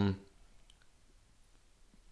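The tail of a drawn-out spoken "um" fades out just after the start, then near silence with room tone and a few faint, scattered clicks.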